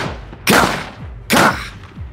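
Three gunshots, a sound-designed effect, each a sharp crack with a fading echo tail. The first lands right at the start, then two more follow about nine-tenths of a second apart.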